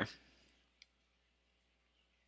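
Near silence: room tone, with one faint tick just under a second in.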